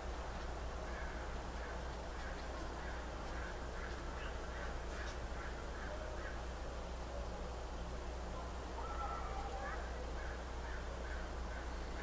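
Steady low hum and background hiss, with faint short animal calls repeating in the background.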